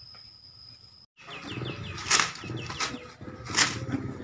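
An Asian elephant handling banana leaves with its trunk: loud leaf rustles at about two seconds and again at three and a half seconds, with small bird chirps in between. In the first second a faint steady insect whine stops suddenly.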